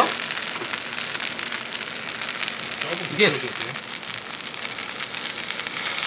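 Red chilli seasoning sauce sizzling and crackling steadily in a hot nonstick frying pan.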